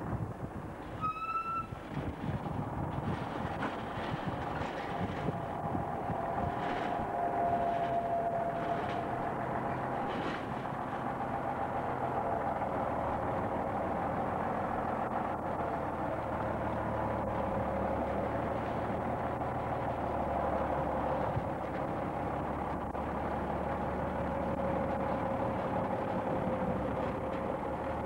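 DAF 2800 truck's diesel engine running steadily at low speed as it hauls a heavy low-loader trailer past, with a brief high-pitched tone about a second in.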